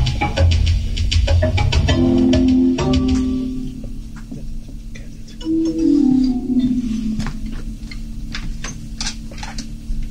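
Drum kit played along with a sequenced backing track: a steady run of drum and cymbal hits over bass and keyboard. The heavy bass drops away after about three and a half seconds, and a held keyboard line slides down in pitch in the second half.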